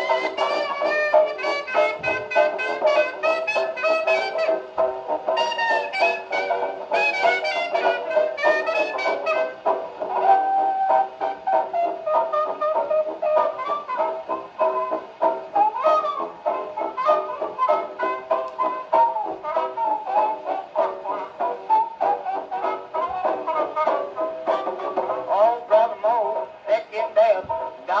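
A 1920s jazz dance band on an old 78 rpm record playing an instrumental chorus, horns and reeds carrying the tune. The sound thins to a single leading melody line about ten seconds in.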